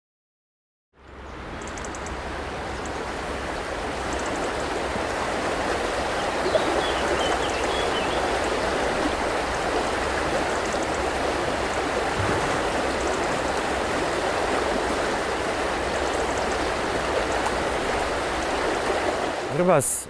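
Steady rush of river water flowing over rocks in shallow rapids, fading in after about a second of silence.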